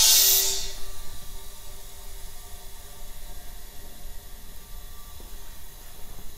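Compressed air rushing into a resin-casting pressure pot, charging it to about 80 psi. The hiss is loudest at once and then tapers off to a steady softer hiss, with faint whistling tones under it.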